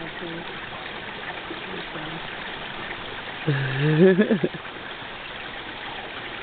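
Steady rushing outdoor background noise with no engine running. A person's voice breaks in for about a second midway, ending in a few quick pulses.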